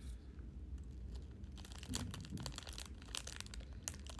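Crinkly plastic snack wrapper being handled and pulled open by hand, with a run of sharp crackles starting about one and a half seconds in.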